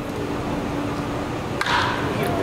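Crack of a wooden baseball bat hitting a pitched ball, a single sharp crack about a second and a half in, over steady ballpark background noise.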